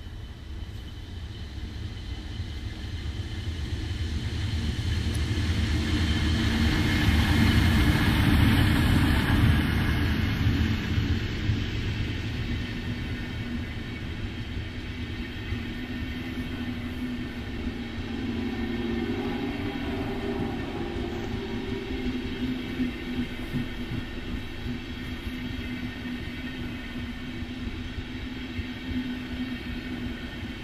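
DB Class 110 electric locomotive hauling a regional passenger train past at close range. The sound grows louder over the first eight seconds or so as the locomotive approaches and passes. A long rake of coaches then rolls by with a steadier rumble of wheels on rail.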